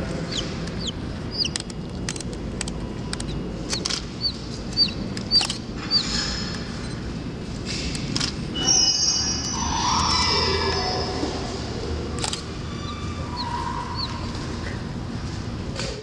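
Chicken chicks peeping, short high chirps coming every so often, over a steady low hum and a few faint clicks.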